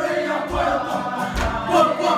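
A group of voices singing a Māori waiata together, with a low beat underneath.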